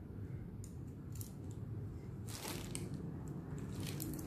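Faint handling noise: a few soft clicks and rustles as a set of eye makeup brushes is handled, over a low steady room hum.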